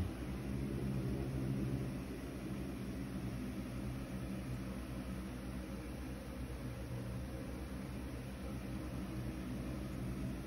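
Steady low hum with an even hiss of background noise in the room; no one speaks.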